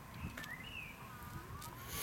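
Faint outdoor ambience: a low wind rumble on the microphone with a few faint, short high chirps.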